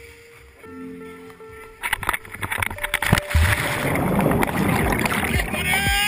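Action-camera microphone swamped by loud rushing and buffeting noise with sharp knocks, starting suddenly about two seconds in, as the camera drops from the cliff toward the sea. Faint background music plays underneath.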